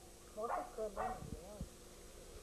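A dog yelping three times in quick succession, short high calls about half a second apart.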